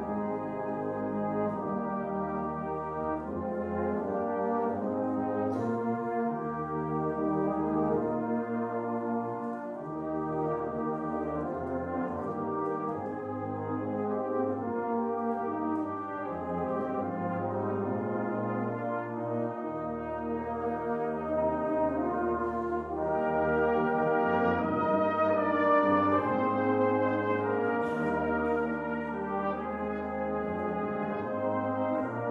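A Salvation Army brass band of cornets, tenor horns, euphoniums and tubas playing a hymn arrangement in sustained chords over slowly moving bass notes. The band swells louder about two-thirds of the way through.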